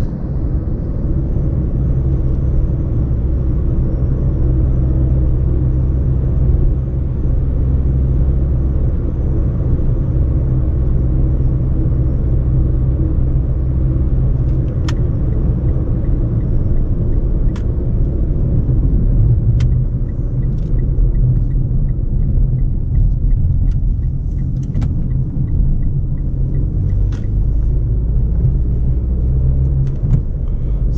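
Steady cabin rumble of a Mitsubishi car cruising at about 70 km/h, with engine drone and tyre noise heard from inside. A few sharp clicks cut in over the rumble in the second half.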